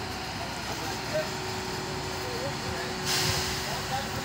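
A 140-ton railway crane's engine running steadily as it holds a wagon up on its slings, with a sharp hiss of released compressed air lasting about half a second, about three seconds in.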